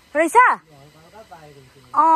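Speech only: a high-pitched voice drawing out "is" with a hissy 's', followed by a quieter, lower voice murmuring.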